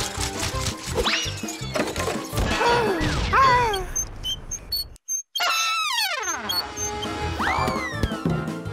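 Playful cartoon background music with sliding, whistle-like sound effects rising and falling in pitch. About five seconds in the sound cuts out for a moment, then a long falling glide follows.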